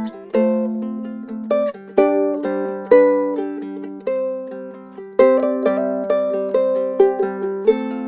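Custom Martin concert ukulele of rosewood and spruce played solo: plucked chords and melody notes, each ringing out and fading, with a new chord every second or so.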